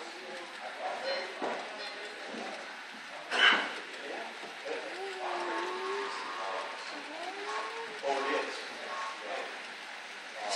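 Indistinct voices of people talking in a room, with a brief sharp noise about three and a half seconds in.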